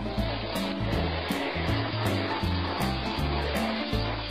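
A vacuum cleaner running steadily, heard under background music with a steady beat.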